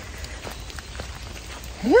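Light drizzle falling in a forest: a steady soft hiss with a few faint separate drop ticks.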